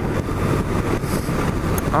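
A 1997 BMW R1100RT's air- and oil-cooled boxer twin running steadily under way at road speed, mixed with wind and road noise.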